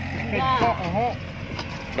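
Excavator's diesel engine running with a steady low hum.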